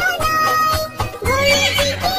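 Children's song backing music with a cartoon horse whinny sound effect over it in the second half.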